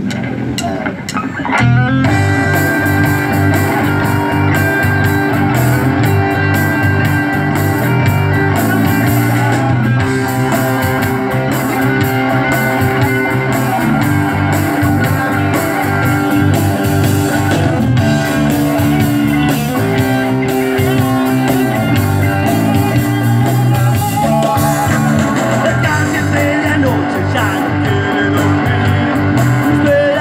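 Rock band playing live: two electric guitars, bass guitar and a drum kit, the full band coming in loud about two seconds in and driving on steadily.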